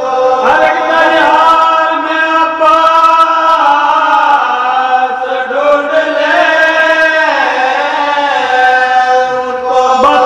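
A group of men's voices chanting a marsiya, the Urdu elegy for Imam Husain, together into a microphone: long drawn-out sung lines with short breaks between phrases.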